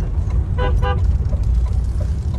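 Steady low road and engine rumble inside a moving car, with two short car-horn toots a little over half a second in, about a quarter second apart.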